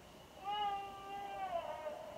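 Baby crying through a baby monitor's speaker: one drawn-out cry starting about half a second in, its pitch dipping slightly near the end. It is the sign that the baby has woken from his nap in the crib.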